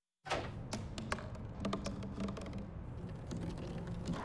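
A moment of dead silence, then light irregular taps and clicks of an empty plastic bottle knocking on pavement, over a steady low outdoor rumble.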